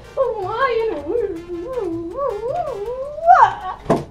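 A girl's wordless whine, her voice wavering up and down in pitch for about three and a half seconds and climbing higher near the end.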